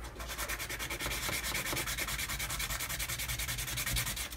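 A small wooden model part rubbed back and forth by hand on a sheet of sandpaper, in rapid, even strokes.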